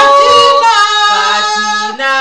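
Two women singing a Christian worship song together, holding long sustained notes.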